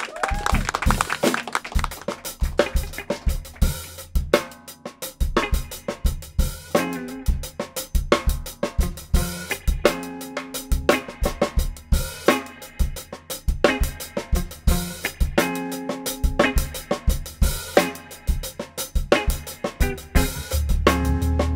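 An organ trio playing a soul-jazz instrumental: a drum kit keeps a steady beat on snare, bass drum and cymbals, under Hammond organ chords and a Silvertone electric guitar. It opens with a cymbal wash, and sustained organ chords come in about four seconds in.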